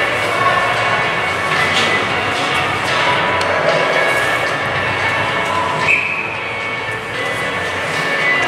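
Steady ice-arena hall noise: a continuous rumble with indistinct voices and faint background music.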